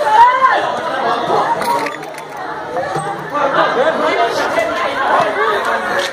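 Several people talking over one another, with high-pitched voices.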